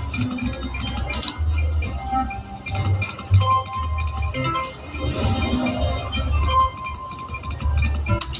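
Video slot machine's game music, with a repeating deep bass line and held chiming tones, and short clinking effects as the reels spin and stop, a new spin every few seconds.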